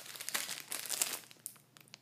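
Shiny plastic packaging bag crinkling as it is handled, a dense run of irregular crackles that thins out and fades near the end.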